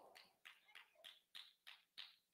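Near silence: room tone with faint, short ticks about three times a second.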